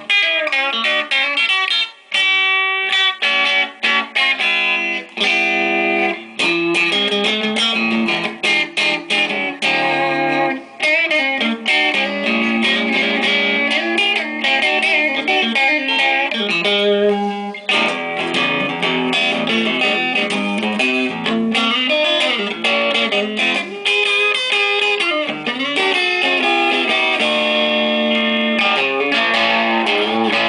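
Squier Classic Vibe '50s Telecaster, a pine-bodied electric guitar, played through an amplifier: a run of quickly picked single-note lines and chords, with short breaks between phrases.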